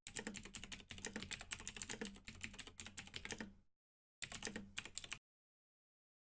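Computer keyboard typing sound effect: a fast, faint run of key clicks lasting about three and a half seconds, a short pause, then a second run of clicks about a second long.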